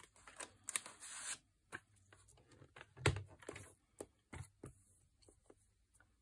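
Paper and card being handled on a plastic paper trimmer: a brief rustle of paper sliding about a second in, and scattered light taps and clicks, the sharpest about three seconds in.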